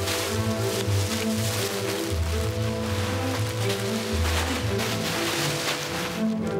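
Background drama score with a held tone over a moving bass line. Through it runs a hissing rustle of clear plastic garment bags being handled, which thins out at the end.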